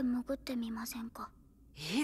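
Soft, whispered speech: two voices of subtitled anime dialogue in Japanese, one speaking for about the first second and another beginning to reply near the end.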